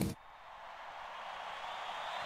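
A faint, even hiss with no distinct tones, slowly fading up after a moment of near silence.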